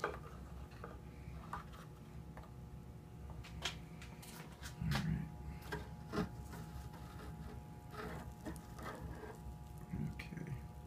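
Handling noise as the magnet-mounted rebar anode is lifted off and drawn out of the steel fuel tank: scattered clicks and scrapes, with two dull thumps about five and six seconds in, over a faint steady hum.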